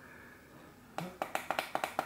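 A quick run of small, sharp clicks, about eight in the last second, from buttons being pressed on a Neewer F200 field monitor while it is stepped through its menu.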